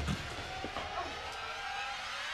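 Quiet television soundtrack: faint sustained tones with slow upward pitch glides over a low background hum.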